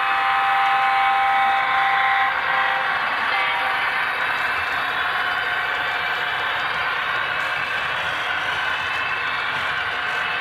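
HO-scale model diesel locomotive's sound-decoder horn sounding, ending about two and a half seconds in, then the steady running noise of a model freight train rolling past on the track.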